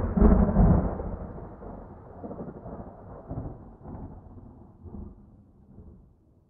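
Rolling thunder: a loud low rumble peaking in the first second, then fading away with several smaller rolls and dying out near the end.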